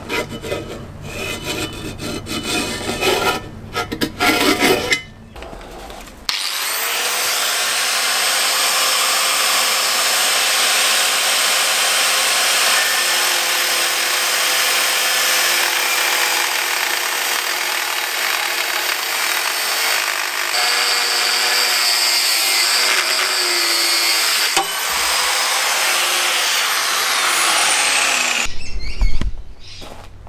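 A Ryobi angle grinder with a thin cut-off disc cutting through a steel flat bar, throwing sparks. It starts about six seconds in, runs steadily under load for about twenty seconds with a brief dip near the end, then winds down. Before it come irregular scraping strokes of hand work on the bar.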